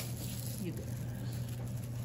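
Quiet room tone: a steady low hum, with a faint brief sound a little past the middle.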